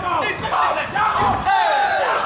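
Ringside crowd shouting and yelling at a kickboxing fight, many voices overlapping.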